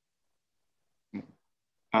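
Dead silence, then a brief pitched vocal sound from the speaker a little over a second in, like a short grunt or clearing of the throat; right at the end he starts talking again with an 'um'.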